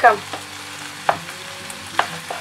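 Minced meat frying in a nonstick pan, a steady sizzle, with two sharp taps, one about a second in and one at the end, as ground spices are added.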